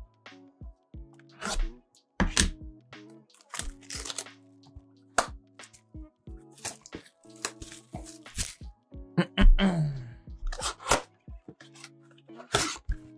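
A cardboard trading-card blaster box being handled and opened by hand: a string of sharp cracks, knocks and crinkles from the box and its wrapping, over quiet background music.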